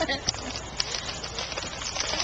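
Silver foil gift wrapping crinkling and tearing as a present is unwrapped by hand: an irregular run of short crackles.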